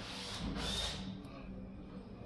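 A short scraping rub, about half a second long, as a small screwdriver is worked against the wire terminals of an RJ45 keystone jack.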